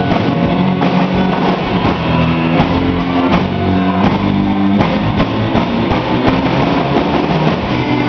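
Live rock band playing: electric guitar, bass guitar and drum kit, loud and steady.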